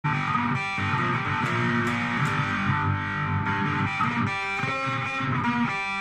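Electric cigar box guitar played with a slide through heavy metal distortion, a continuous run of sustained, distorted notes that shift in pitch.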